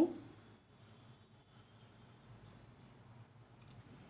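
Faint scratching of a pencil writing on notebook paper, in short, uneven strokes.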